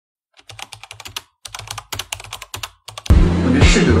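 Rapid clicking of computer keyboard keys, a typing sound effect, running for about two and a half seconds; then music with a steady beat starts abruptly about three seconds in and is much louder.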